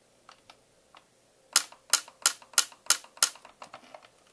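Ellex Ultra Q Reflex YAG laser firing a quick run of shots into the vitreous to vaporize floater debris, each shot a sharp click. The clicks come about three a second, starting about a second and a half in, with a few fainter clicks near the end.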